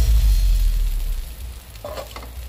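Beef slices sizzling in hot oil in a frying pan as they brown, a steady hiss. The bass of background music dies away in the first second, and a few notes of it return near the end.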